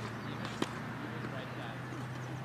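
A single sharp knock of a tennis ball about half a second in, over a steady low hum.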